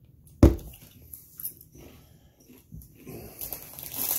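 A single sharp thump about half a second in, then faint crunching and crinkling from corn chips being eaten out of a snack bag.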